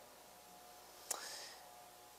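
Faint room tone in a pause in speech, with one short, soft breathy sound from a person about a second in, a click followed by a brief rising hiss.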